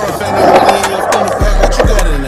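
Skateboard rolling on concrete, the wheels' rolling noise with a few sharp clacks of the board, under a hip hop beat whose bass comes back in about halfway through.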